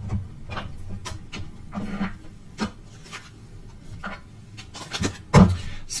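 Tarot cards being shuffled by hand: a run of irregular rubs and soft card slaps, with a louder thump about five seconds in.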